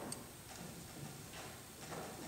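A few faint, scattered clicks and light rustling as a pianist adjusts a padded piano bench and sits down at it. There is no playing yet.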